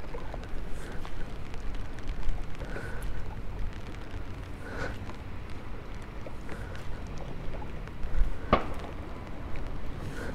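Steady wind rumble on the microphone on an open boat on choppy water, with a single sharp bang about eight and a half seconds in.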